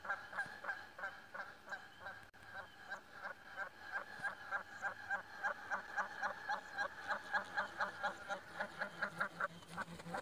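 A goose honking over and over in a fast, even series of short calls, about four a second, with a brief break a little over two seconds in.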